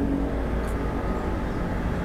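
Steady low background rumble with a faint, even high hum and no distinct event.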